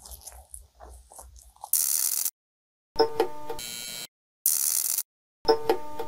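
Soft chewing and mouth sounds of someone eating a doughnut. Then a run of loud electronic title-card sound effects: a hissing burst, a buzzing tone, a second hiss and a second buzz, each cut off into dead silence.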